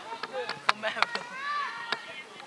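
A football being kicked during a match: a few sharp knocks, with players' shouts between them.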